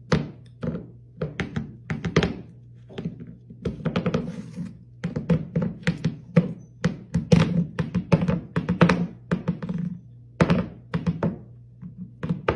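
Cat batting and tipping its empty food bowl on a wooden floor with its paw: a quick, irregular run of knocks and thunks, several a second, as the bowl rocks and drops back onto the boards. The cat is drumming on its bowl to be fed.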